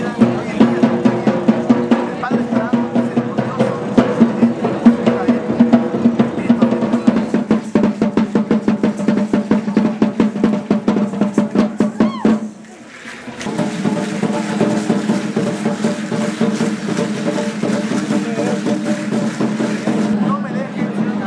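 Fast, driving drumming of dancers' drums over steady held tones. It drops out briefly about twelve seconds in, then picks up again.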